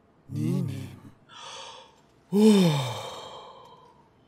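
A man sighing. A short voiced sound comes first, then a breath in, then the loudest part about halfway through: a long breathy sigh that rises briefly, falls in pitch and trails off.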